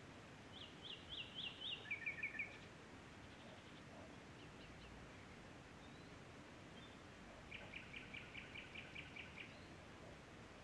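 A songbird singing two phrases: a quick run of about five down-slurred notes, then three lower notes. After a pause of several seconds comes a longer, even series of about nine rapid repeated notes, over faint steady hiss.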